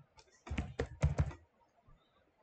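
Computer keyboard typing: a quick run of about five keystrokes, spelling out a five-letter stock ticker, starting about half a second in and over in under a second.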